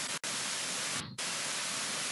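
Steady static hiss from a noisy microphone or recording line, with no speech over it. The hiss cuts out for an instant about a quarter second in and thins briefly about a second in.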